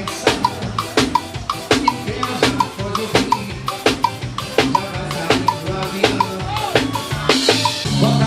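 A live forró band playing an instrumental passage: drum kit and percussion keep a steady quick beat of about three strikes a second over a bass line, with short bright pitched notes between the beats.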